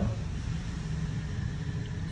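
A low, steady background rumble, with no keyboard notes or voice sounding.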